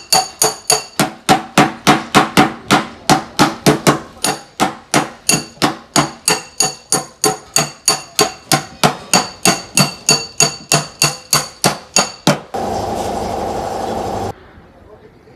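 Rapid, even metal-on-metal tapping, about four strikes a second with a bright ring: a panel beater's flat metal tool working a dent out of a car's sheet-steel tailgate. Near the end the tapping stops and a steady rubbing sound follows as the panel is wiped with a cloth.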